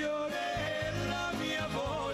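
Live pop band playing an Italian song, with guitars and drums under a melody line that wavers near the end.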